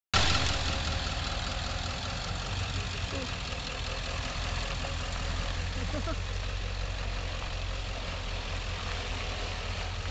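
Engine of a loaded flatbed pickup truck running at low speed as it drives past and pulls away, a steady low rumble.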